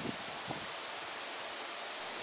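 Steady, faint outdoor background hiss with no other sound in it, apart from a tiny click about half a second in.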